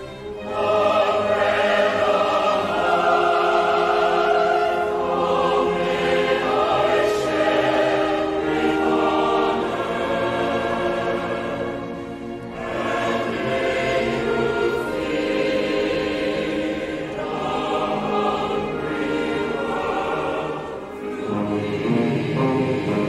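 Mixed choir singing in full chords with orchestral accompaniment, in long phrases with short breaks about 12 and 21 seconds in.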